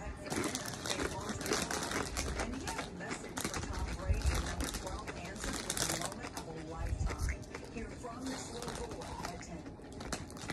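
Close-up crunching and chewing of Doritos tortilla chips with an open mouth, a dense run of crackly crunches that goes on all through.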